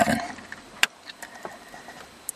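A man's voice finishing a word, then faint room noise with one sharp click a little under a second in.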